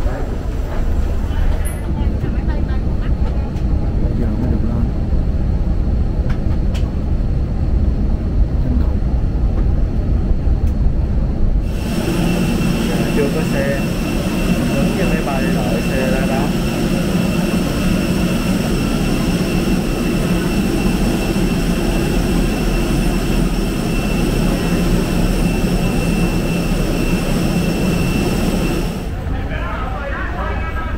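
A steady low rumble for the first dozen seconds. Then, from about twelve seconds in, the close, steady high whine and hum of a jet airliner's engine running on the ground, which stops shortly before the end.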